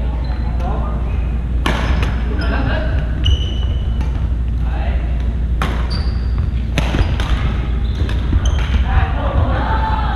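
Badminton rally: several sharp racket hits on the shuttlecock, clustered around two seconds in and again around six to seven seconds in, with short high sneaker squeaks on the wooden gym floor. Voices echo in the large hall over a steady low hum.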